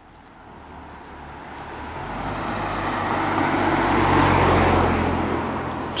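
A motor vehicle driving past on the road: tyre and engine noise with a low hum, growing louder over about four seconds, peaking about four and a half seconds in, then fading.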